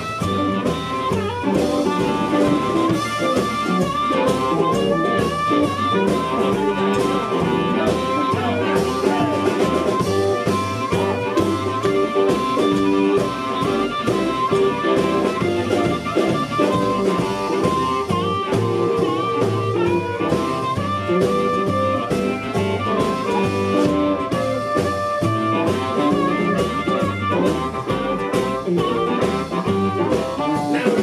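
Live blues band playing an instrumental passage without vocals: upright double bass, drum kit and electric guitar.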